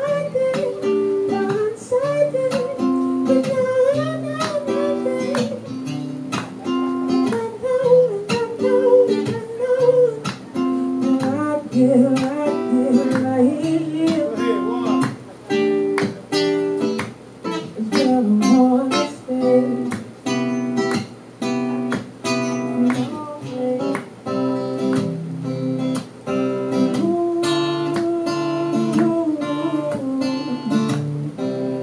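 Acoustic guitar strummed in a steady rhythm, with a man singing over it, his voice clearest in the first half. The song is pop-R&B.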